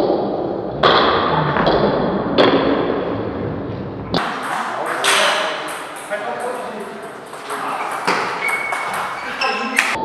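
Table tennis ball being struck in rallies, sharp pings of the ball off rackets and table that ring in a large hall. About four seconds in the sound changes suddenly as another rally begins.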